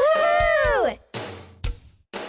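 A voice holding one long sung syllable for about a second, its pitch rising then falling, over a children's song backing track. After the voice stops, the backing music carries on with a few drum beats.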